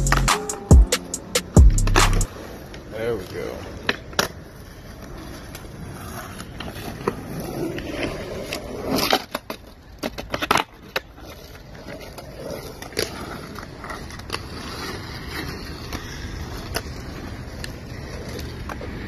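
Skateboard wheels rolling on concrete, with scattered sharp clacks of the board popping and landing, the loudest cluster about nine to ten and a half seconds in. A music track with a heavy beat cuts off about two seconds in.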